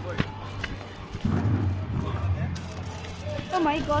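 People's voices over a steady low hum, with one sharp crack shortly after the start; the talking grows clearer near the end.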